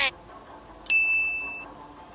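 A single high electronic ding, a bell-like chime sound effect that comes in suddenly about a second in and fades away over the next second.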